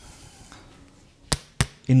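Two sharp knocks about a quarter second apart, near the end, from a jar and a bottle being handled against the kitchen counter as they are picked up.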